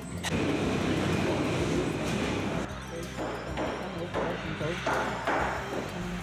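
Indistinct murmur of people's voices with faint background music.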